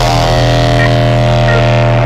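Crossbreed hardcore electronic music: one loud, low synth note held steady with a rich stack of overtones, with no drum hits.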